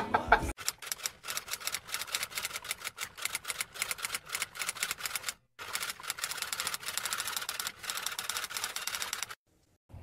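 Typewriter-style typing sound effect: a rapid run of key clicks, breaking off briefly about five and a half seconds in and stopping shortly before the end.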